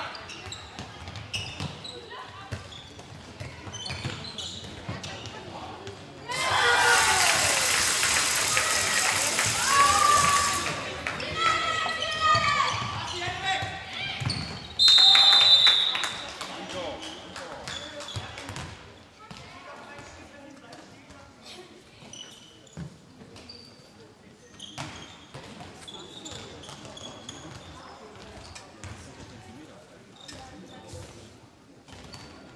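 Handball match in a sports hall: a ball bouncing on the court floor with shoe and body impacts, and players and spectators calling out. About six seconds in, a loud burst of crowd cheering and clapping lasts about four seconds, and about fifteen seconds in a referee's whistle blows once, briefly.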